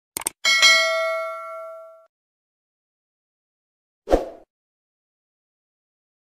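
Subscribe-animation sound effect: a quick double mouse click, then a bright notification-bell ding that rings out and fades over about a second and a half. About four seconds in, a single brief low thump.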